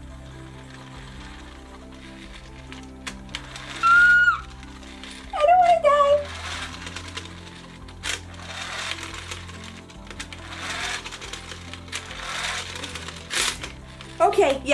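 Plastic Sky Dancers launcher's pull-cord mechanism whirring and rattling in several pulls as the cord is drawn, over steady background music. A couple of short vocal sounds come about four and five and a half seconds in.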